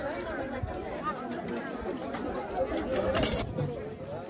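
Several people talking at once in overlapping, indistinct chatter, with a short hissy swish about three seconds in.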